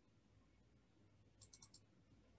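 Near silence, broken about one and a half seconds in by a quick run of four faint clicks from a computer mouse or keyboard.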